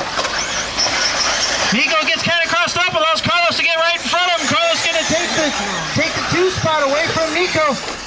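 Mostly a man's voice talking quickly, though the recogniser caught no words. Behind it, in the first couple of seconds, is the high whine of electric RC buggy motors.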